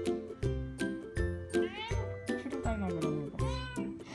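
A Ragdoll cat meowing, with calls that rise and fall in pitch about one and a half seconds in and again near the end, over background music.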